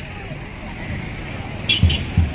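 Murmur of many voices from a walking street procession, with a run of low, evenly spaced thumps, about three a second, starting near the end.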